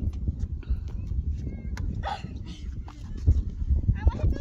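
Wind buffeting the microphone, a gusty low rumble with a few sharp thumps a little after three seconds in, and faint children's voices in the background.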